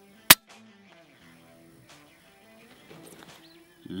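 A single sharp shot from a .177 air rifle firing a slug, about a third of a second in, followed by a faint click. Quiet guitar background music plays underneath.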